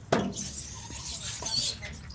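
A child's clothes rubbing down a stainless-steel playground slide: a sudden start, then a high, squeaky swishing for nearly two seconds.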